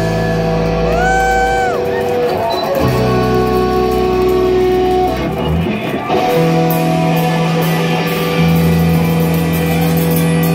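Live rock band playing loud, with electric guitar and bass holding sustained, ringing chords that change every few seconds. About a second in, one note slides up and back down.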